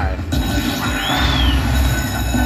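Video slot machine sound effects: sustained electronic tones with one rising-then-falling whistle-like sweep about a second in, as the respin feature resolves into a Mini jackpot award, over a low casino room rumble.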